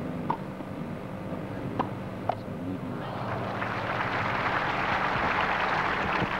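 Tennis ball struck by racquets three times in a rally, sharp pops over a steady low hum. Crowd applause then rises from about halfway and swells toward the end as the point finishes.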